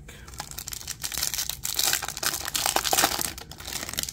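Foil wrapper of a trading-card pack being torn open and crinkled by hand: a dense, crackling rustle that grows louder through the middle and stops just before the cards come out.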